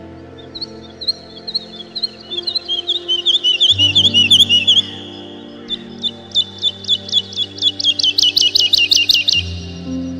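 Birds singing: a series of quick chirps and swooping notes, then a fast run of repeated notes, about four or five a second, from about six seconds in until near the end. Underneath are held low music chords that change about four seconds in and again near the end.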